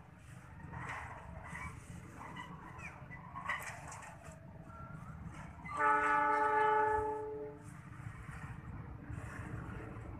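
A horn sounds once about six seconds in, one steady note held for nearly two seconds, over a low steady rumble.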